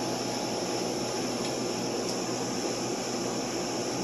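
Steady, even rushing hiss of a store's air conditioning running.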